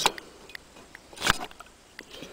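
Faint light clicks and one short knock a little over a second in, as the cylinder barrel is slid down over the piston and rings of a Suzuki JR50 two-stroke engine.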